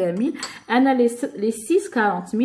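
Dishes clinking against each other as they are handled, with a woman talking over them.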